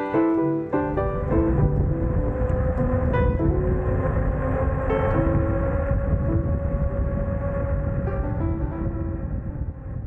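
Piano music, joined from about a second in by a steady rushing noise with a steady whine in it: the Vitilan U7 electric fat bike riding along an asphalt road. The piano carries on more faintly over it, and both fade out near the end.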